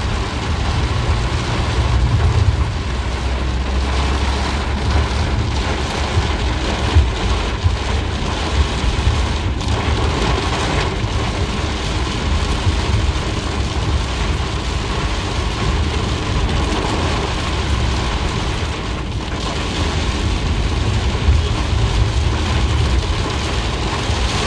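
Heavy rain pelting a car's roof and windshield, heard from inside the cabin as a dense, steady hiss with a deep rumble underneath.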